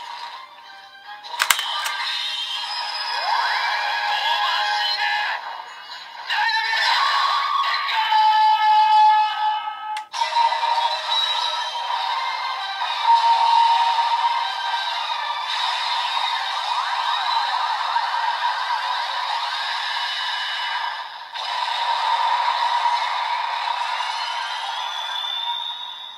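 DX Blazar Brace toy playing a transformation sound sequence through its small built-in speaker: electronic effects and music with no bass. There is a sharp click about a second and a half in, and a rising whine near the end.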